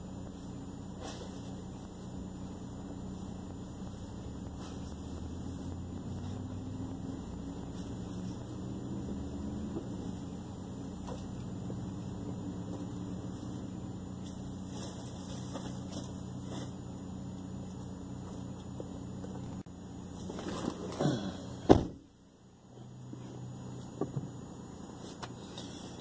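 Parked car's engine idling steadily, heard from inside the empty cabin. Near the end, shuffling as the driver climbs back in, then the car door shuts with one loud thump.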